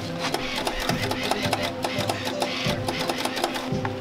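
Wire-feed welder's drive motor running with a rapid mechanical clicking rattle as new wire is fed from a freshly loaded spool, over background music.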